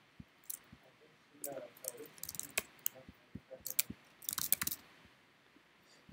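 Faint, scattered clicks of a computer mouse and keyboard, irregularly spaced, with a few quiet mumbled sounds in between.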